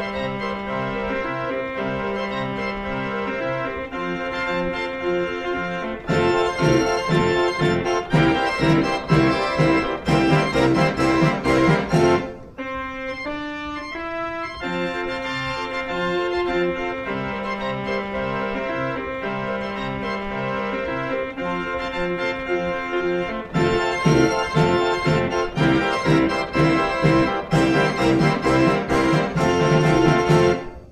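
1912 Ruth 78-key book-played fairground organ playing a march-like tune on its pipes, bass and accompaniment. About six seconds in and again near the end it swells into louder, fuller passages with its drum and cymbal striking the beat, and around halfway it drops briefly to a thin, soft passage.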